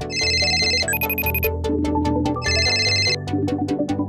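Background music with a smartphone ringtone ringing over it in two bursts of about a second each, the sound of an incoming call.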